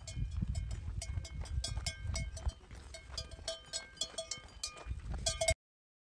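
Metal bells, cowbells by their ring, clanking irregularly many times a second over a low rumble. The clanking is louder at first, softer in the middle, swells again near the end and cuts off abruptly.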